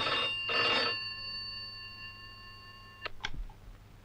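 Old black rotary telephone's bell ringing in two quick bursts, then ringing out and fading. About three seconds in it stops with two sharp clicks as the handset is picked up.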